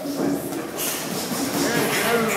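Indistinct voices talking over a steady rumbling background noise, with a brief burst of hiss-like noise about a second in.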